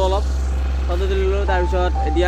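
A man speaking to the camera, with a steady low drone underneath, most likely the bass of a background music track.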